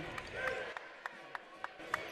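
Arena crowd murmur with a basketball being dribbled on a hardwood court: a run of short, sharp bounces from about half a second in, roughly three a second.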